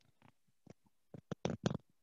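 A few faint, short clicks or taps, scattered at first and coming closer together from about a second in.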